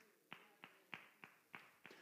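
Near silence, with a row of faint, evenly spaced taps, about three a second.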